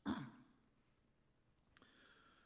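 A man's voice says one word into a microphone at the start, then a pause of quiet room tone; near the end a small click and a faint sigh or breath.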